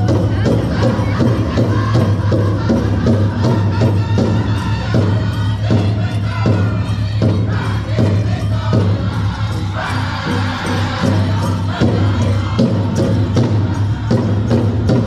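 Powwow drum group singing a straight traditional song, with a steady beat struck on the big drum, over arena crowd noise.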